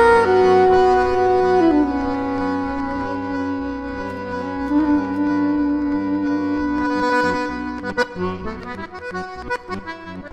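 Soprano saxophone and diatonic button accordion playing together. Long held notes step down in pitch over the first few seconds, then give way to shorter, choppier notes from about eight seconds in.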